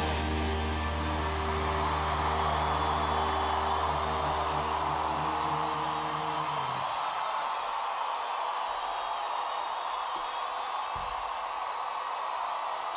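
A live rock band's final chord held and ringing out over a concert crowd's steady cheering and applause; the chord stops about seven seconds in, leaving only the crowd.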